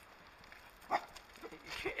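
A small dog barks once, sharply, about a second in.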